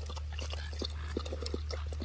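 A dog lapping milk from a plastic bowl held in a hand: faint, irregular short laps over a steady low rumble.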